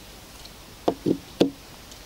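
A folded metal multitool set down on a wooden plank table: three quick knocks about a second in.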